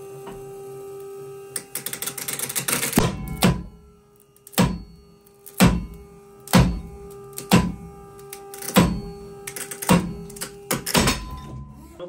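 A sewn-pocket daisy chain clipped across two adjacent pockets is pulled to failure on a pull-test rig. After a crackling stretch, its bar-tack stitching lets go in a run of sharp snaps about once a second, one pocket tearing after another, over a steady hum.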